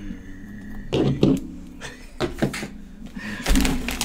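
Handling noises on a tabletop while peppers are stuffed: a few light knocks and clicks, then a low thump near the end.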